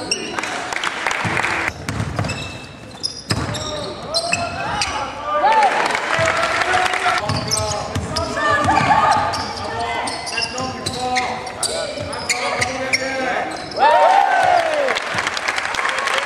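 Basketball game sounds on a hardwood court: a ball dribbling, sneakers squeaking in short high squeals several times, and indistinct voices of players and bench calling out.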